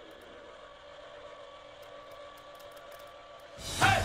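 Faint, steady whir of a small electric mobility scooter motor. Near the end, loud upbeat music with a beat comes in.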